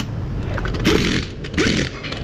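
Pneumatic impact wrench run in two short bursts, tightening a car wheel's lug nuts.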